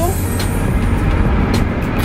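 Steady road and engine rumble heard inside a moving car's cabin.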